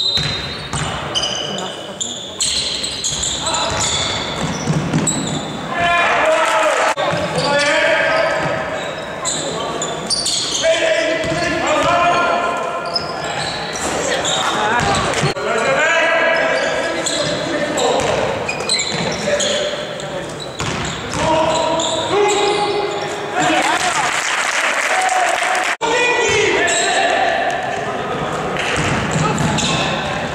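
Indoor basketball game on a wooden court: the ball bouncing and players' and bystanders' voices calling out, echoing in the large hall. A short high whistle sounds right at the start.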